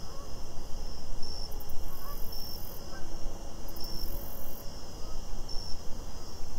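Crickets chirping in a steady, even rhythm over a low rumbling background noise.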